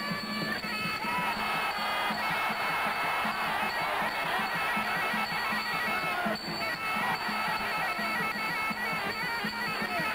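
Traditional Muay Thai fight music: a shrill, reedy pipe (pi java) plays a held, wavering melody over a steady drum beat.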